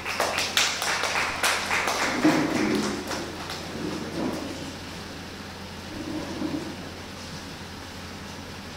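A small group clapping their hands: a quick run of irregular claps that thins out and stops about three and a half seconds in.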